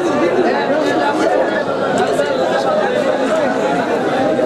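Men's voices talking over one another at once, crowd chatter with no single clear speaker.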